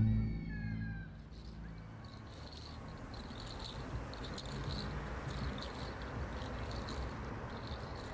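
The song's last note dies away in the first second. After that comes quiet street ambience: a low steady rumble, with faint, short high chirps repeating every half second or so.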